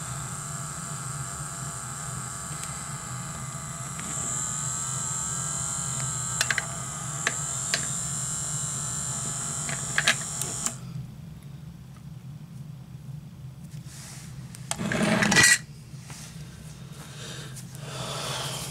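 Small battery-powered makeup-brush cleaning machine spinning with a steady high whine and low hum, with a few light clicks, then cutting off abruptly about ten seconds in; she feels its batteries are already running low. A short loud rustling noise follows a few seconds later.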